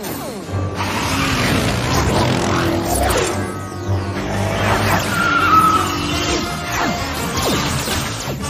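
Cartoon action music playing under sound effects of the heroes' vehicles speeding off, with whooshing and crashing effects.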